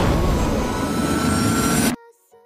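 Loud vehicle engine noise, an edited speed-off sound effect, with a faint slowly rising whine; it cuts off suddenly near the end.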